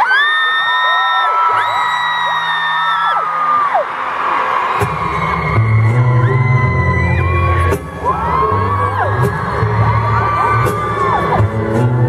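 Live acoustic performance: long, wordless sung notes are held and layered, and about five seconds in a low, rhythmic thump of struck acoustic guitar body comes in under them.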